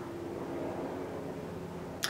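Room tone: a steady low electrical hum over a faint hiss, with no distinct event.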